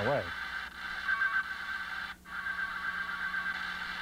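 Steady radio static from a spectrum analyzer's built-in detector speaker, tuned in zero span to a VHF channel at 152.24 MHz where the carrier has just dropped out. The hiss breaks off briefly a little after two seconds in.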